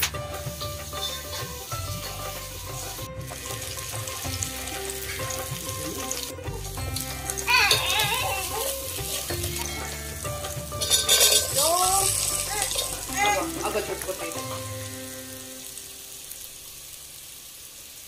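Chopped vegetables frying in oil in an aluminium pot and being stirred with a metal slotted spoon, a steady sizzle with a louder burst of sizzling about eleven seconds in. Background music plays underneath and stops near the end.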